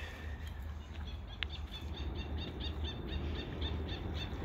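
A small bird singing a quick run of short, high chirps, about four or five a second, over a steady low outdoor rumble and hiss.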